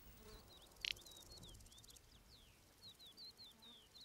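Male little bustard giving one short, dry call about a second in, over faint high chirps of small birds and insects in open steppe.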